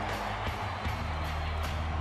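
Music with a steady bass line and a regular beat playing loudly over a dense crowd noise.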